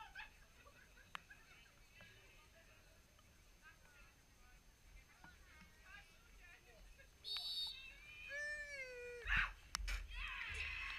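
Faint distant shouts of footballers on an open pitch. About seven seconds in a referee's whistle blows briefly, then a long shouted call rises and falls. Near the end comes the sharp thud of the ball being struck for the set piece that goes in.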